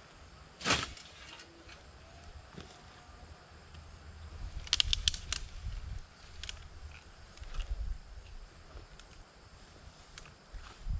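Hand scythe cutting through dense ragweed: one loud swish about a second in, a quick run of sharp clicks and rustling in the middle, and lighter swishes after.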